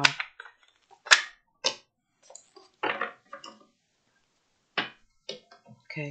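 Tarot cards being shuffled and slapped down on a table: a handful of short, sharp card sounds, a second or so apart.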